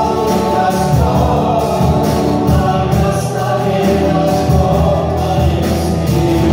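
Live worship band: several singers on microphones singing together over acoustic and electric guitars and drums, with a steady beat.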